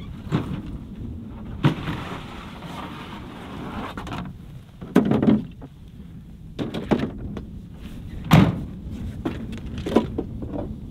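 A plastic ice-fishing sled and hard gear cases being handled at a pickup's tailgate: a stretch of scraping about two seconds in, then several separate clunks and thuds as gear is set into the sled, over a steady low rumble.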